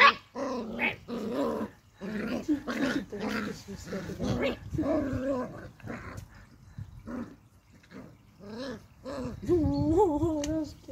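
Beagle puppies play-growling and whining over a rope toy, in many short pitched bursts with brief pauses between.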